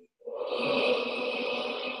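Many voices chanting a long "Om" together in unison, blending into a soft, blurred hum. It starts a moment in and fades slightly towards the end: the group is repeating the syllable after the teacher's lead.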